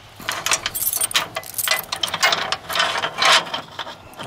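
Key turning in a padlock and the lock being worked off a steel gate chain: an irregular run of metallic clicks, scrapes and chain rattles.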